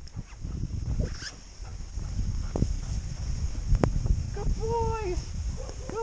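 Wind rumbling on the microphone and hiss of sliding over snow while two golden retrievers tow a rider. About four and a half seconds in there is a single short call that rises and falls.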